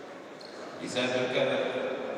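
A person's voice calling out in a large hall, starting about a second in.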